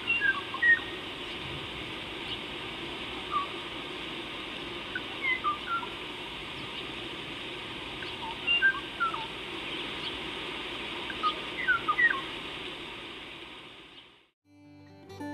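Birds calling in short whistled chirps that come in scattered clusters over a steady background hiss.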